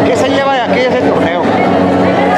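A man speaking close to the microphone, with a steady background noise underneath.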